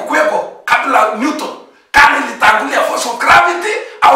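Speech only: a man preaching in loud, forceful phrases with short pauses between them.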